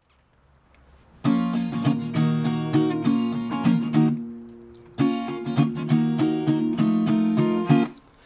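Small-bodied acoustic guitar strummed in an instrumental intro: a run of chord strums starts about a second in and is left to ring out at the middle, then a second run of strums stops abruptly just before the end.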